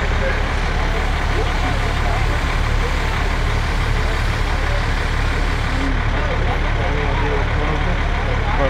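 Fire truck's diesel engine running steadily with a deep, even rumble, mixed with distant voices.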